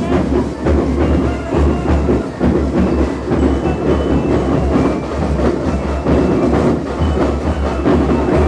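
School marching rhythm band (banda rítmica) playing, led by a steady drum cadence with heavy, regularly repeating bass drum beats.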